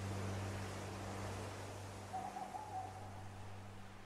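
Background music fading out as a low steady drone, with a single hoot about two seconds in that is held for about a second.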